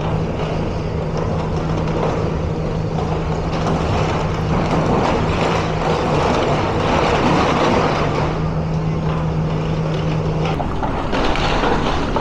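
Demolition excavator's diesel engine running steadily under load as its attachment tears into the building, with crunching and clattering of breaking rubble, heaviest in the middle stretch. The engine's steady note drops away near the end.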